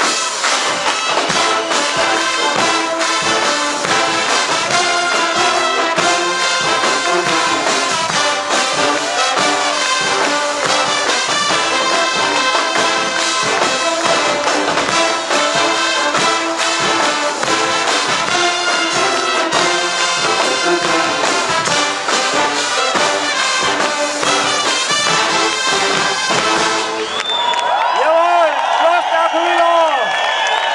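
Guggenmusik carnival band of brass and drums playing loudly, with a steady driving beat. Near the end the drums stop and the brass holds long wavering notes as the piece closes.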